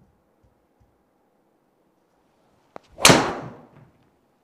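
A golf driver striking a ball off a tee indoors: one sharp, loud crack about three seconds in that rings out briefly in the room. The ball was caught low on the clubface.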